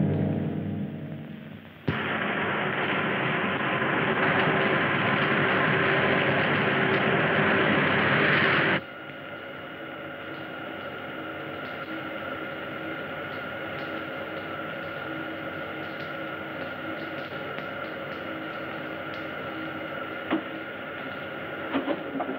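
Spaceship blast-off sound effect from a 1950s sci-fi film: a loud rushing roar that starts abruptly about two seconds in and cuts off sharply near nine seconds, followed by a steady humming drone with a few high held tones for the ship in flight. A musical chord fades out at the start.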